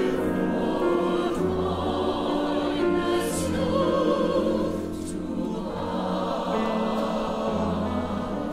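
Mixed chorus of men's and women's voices singing held chords, accompanied by grand piano.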